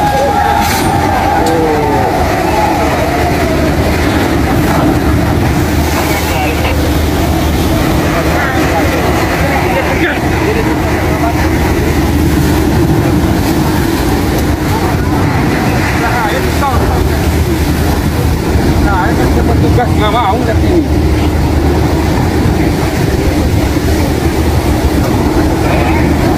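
Steady low drone of a berthed ferry's engines mixed with wind and waves washing over the pier, with people's voices calling out now and then.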